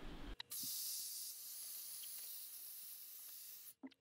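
Hair dryer blowing, heard faintly as a steady airy hiss with a faint thin whine, for about three seconds between two sudden cuts.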